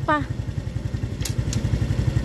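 Small motor scooter engine running steadily at low speed, a low rapid putter.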